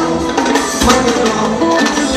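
Live mbalax band playing: guitar lines over drums and hand percussion, loud and steady.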